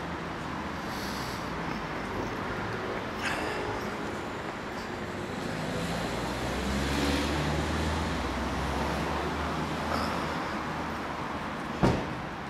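Street traffic: a motor vehicle's engine rumbling nearby, growing louder toward the middle and then easing off. A short knock near the end.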